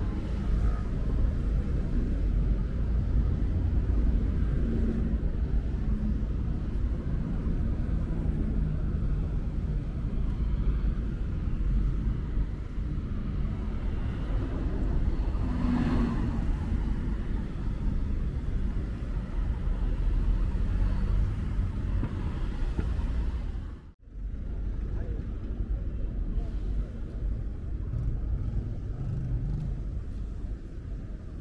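City road traffic running steadily alongside: a low rumble of passing cars and buses. The sound drops out for an instant about three-quarters of the way through.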